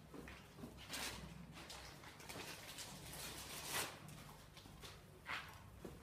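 Faint rustles and light knocks of handling and movement, the loudest a little before the fourth second, over a low steady hum.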